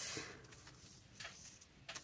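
Faint rustling of a paper frame and journal page being handled and slid into place. There is a soft scrape at the start and a couple of small light clicks later.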